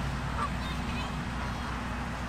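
Canada geese in a flock honking, a few short calls about half a second to a second in, over a steady low background hum.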